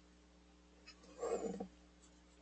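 A brief, low vocal-like sound, lasting about half a second, a little over a second in, over a faint steady electrical hum.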